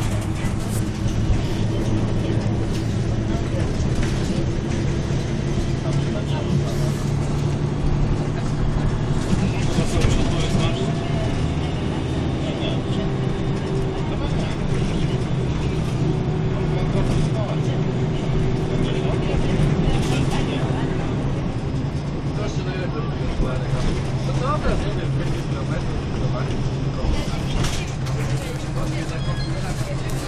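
Volvo B10MA articulated city bus heard from inside the passenger cabin while under way: the engine drones steadily, its pitch climbing and settling as the bus speeds up and eases off, with interior rattles and knocks over it.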